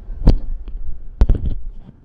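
Dull knocks and thumps of a phone being handled and moved, picked up on its own microphone over a low in-car rumble. One loud thump comes just after the start, then a quick cluster of knocks about a second in.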